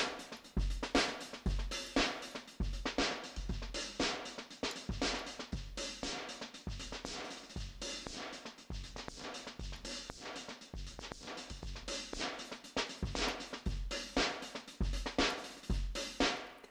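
Acoustic drum-kit loop from the Addictive Drums plug-in, kick, snare and hi-hat playing through an EQ-based multiband compressor. The loop gets quieter as the compressor's threshold and ratio are turned up, and comes back up somewhat near the end.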